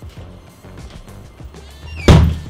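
Background music, with a door's hinges creaking near the end as the door is swung shut.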